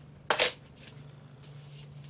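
A single sharp clack of plastic kitchenware, a colander knocking against a mesh strainer as they are handled and set down, followed by faint handling rustles over a steady low hum.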